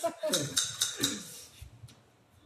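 Two men's laughter trailing off over the first second, with a few sharp taps mixed in, then quiet.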